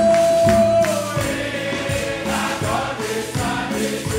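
Church congregation singing a French hymn together over a steady percussion beat, with a long held note through the first second.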